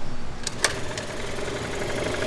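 Derbi GP1's two-stroke scooter engine kick-started by hand. Two sharp clacks from the kick-start about half a second in, then the engine catches and settles into a steady idle.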